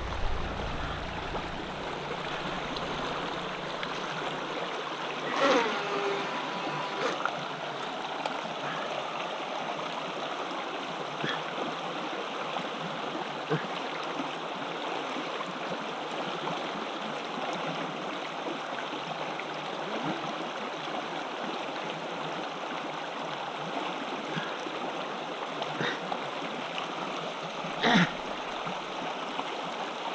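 Shallow stream running over rocks, a steady rush of water, with a few brief louder sounds, one about five seconds in and one near the end.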